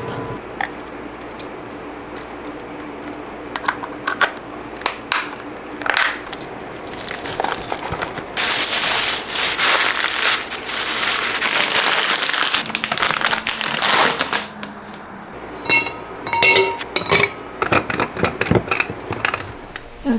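Plastic bags crinkling and rustling as packed food is handled, loudest in a dense stretch through the middle, with scattered light clicks and taps around it.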